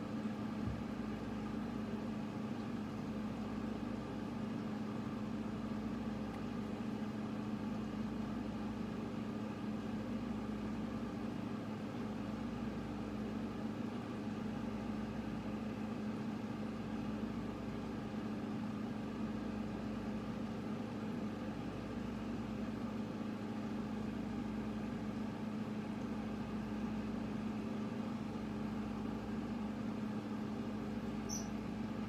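A steady low hum made of several even tones, with a deeper rumble underneath that swells and dips about every two seconds.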